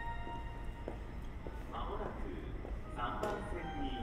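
Station public-address system: the last tones of an electronic train-approach chime fade out, then a recorded announcement voice begins warning of the arriving train. A steady low rumble sits beneath it.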